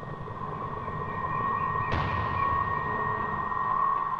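Film background score: a held high tone over a low rumble, swelling louder toward the end, with a soft hit about two seconds in.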